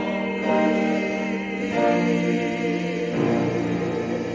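Church choir singing slow, held chords, the chord changing about every second and a half.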